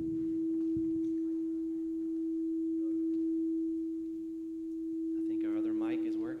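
A struck tuning fork sounding one pure, steady tone around the E above middle C, giving a reference pitch before a song. A voice comes in faintly near the end.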